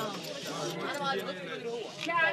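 Men talking, several voices overlapping in unclear chatter.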